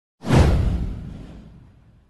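An intro's whoosh sound effect with a deep low boom under it. It starts sharply just after the beginning and fades away over about a second and a half.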